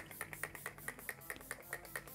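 NYX primer and setting spray misted from a finger-pump bottle, pumped fast: a quick, even run of faint short spritzes, about seven a second.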